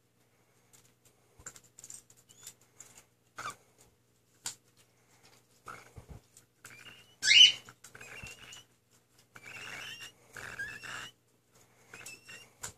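Baby cockatiel chick making soft beak clicks and scrapes, then one loud harsh squawk sweeping upward about seven seconds in, followed by a run of raspy chirps.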